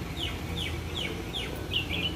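A bird calling: a run of about five quick high notes, each sliding downward, repeated two to three times a second, then two shorter notes near the end.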